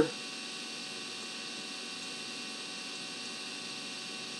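Steady electrical hum and hiss at an even level, with nothing else: the background noise of the recording.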